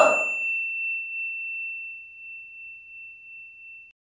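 A bell-like chime struck once: a clear high ringing tone that fades slowly with a slight waver, its brighter overtones dying away within the first second, and it cuts off just before the end.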